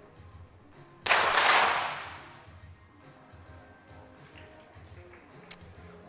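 .22 sport pistol shot about a second in, loud and ringing out over about a second, then a single sharper crack near the end. Faint background music runs underneath.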